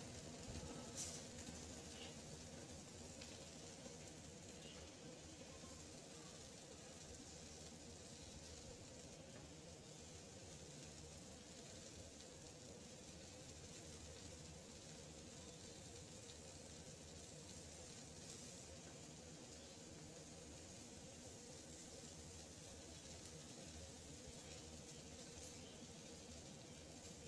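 Quiet, steady sizzle of chicken pieces and onions frying in a metal kadai on a gas stove, with a single click about a second in.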